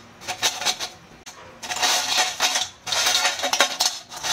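Crisp fried potato chips rustling and crackling as a hand stirs them in a steel bowl, in three bursts of quick dry clicks. The brittle crackle shows how crispy the chips have fried.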